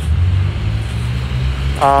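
Steady low rumble, like road traffic, with no other event standing out.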